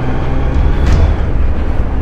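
Touring motorcycle engine running at freeway speed, heard from the rider's seat as a steady low rumble mixed with wind and road noise.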